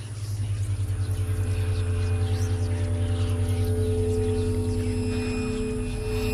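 Eerie ambient drone score: a deep, rapidly throbbing hum, with steady higher tones that swell in about halfway through.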